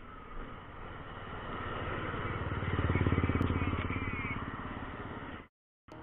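Bajaj Pulsar RS 200's single-cylinder engine running, swelling to its loudest a few seconds in as it is revved, then easing back. The sound cuts off suddenly near the end.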